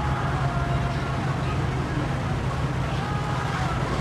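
Steady low mechanical hum, like an engine running nearby, with no change in pitch or level.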